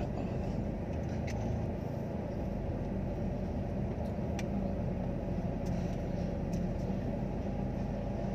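Inside a moving car's cabin: a steady low rumble of engine and road noise, with a few faint clicks.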